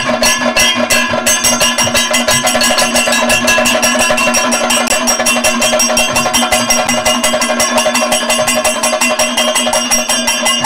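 Kathakali percussion, chenda and maddalam drums beaten in fast, even strokes over a steady ringing tone. The strokes quicken about a second in.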